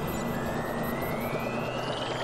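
Sci-fi sound-effect riser under an interface animation: a steady airy rumble like a jet engine, with a thin whine rising slowly in pitch.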